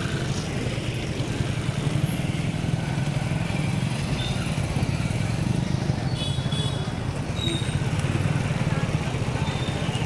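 Small two-wheeler engine running steadily, a low even hum with no revving.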